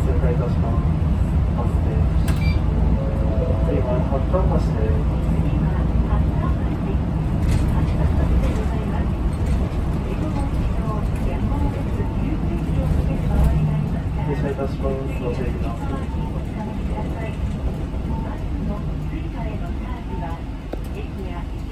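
Inside a moving city bus: a steady low rumble of the engine and road, with indistinct voices over it.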